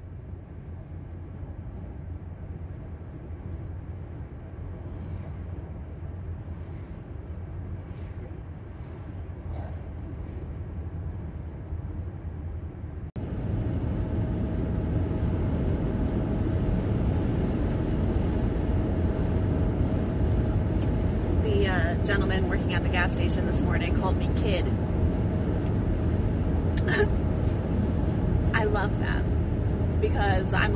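Steady road and engine rumble of a Dodge Grand Caravan minivan cruising on a highway, heard from inside the cabin. It turns louder about a third of the way through.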